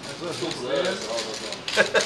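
Background chatter of several voices, with a louder voice breaking in near the end.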